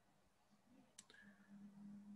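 Near silence with one faint click about a second in, followed by a faint low steady hum.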